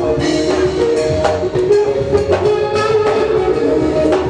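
Live gospel praise band playing an instrumental passage: a steady drum beat under sustained instrument chords, with no singing.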